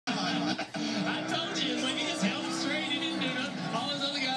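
Television broadcast sound heard through the TV's speaker: music with voices over it.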